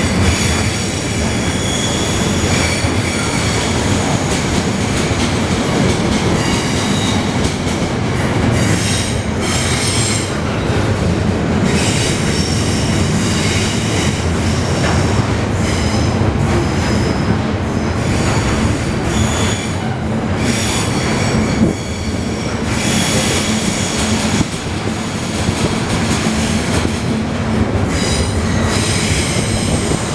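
Intermodal container wagons of a freight train rolling past, a steady rumble of wheels on rail with high-pitched wheel squeal coming and going. A couple of short sharp knocks sound about two-thirds of the way through.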